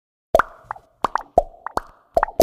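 A string of about eight short popping sounds in a loose rhythm, each with a quick upward bend in pitch, starting after a brief silence.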